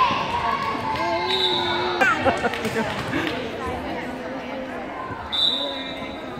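Spectators chatting and laughing in a school gymnasium, with a few sharp knocks of a volleyball on the wooden floor about two seconds in. A short steady high whistle sounds twice, once early and once near the end.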